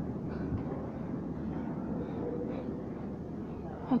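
Steady background noise inside a large glasshouse, with faint indistinct voices; no distinct sound event stands out.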